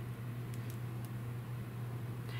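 Quiet room tone with a steady low electrical hum, broken by a few faint ticks.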